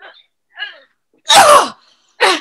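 A woman's short, loud, strained cry of effort, falling in pitch, about a second and a half in, after a couple of soft grunts: the sound of straining to pull something free.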